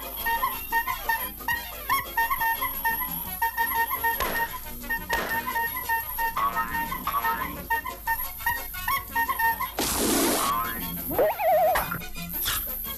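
Cartoon background music with a repeating melodic figure, overlaid with comic sound effects: short swishes, and near the end a loud hissing rush followed by a wobbling, whistle-like slide.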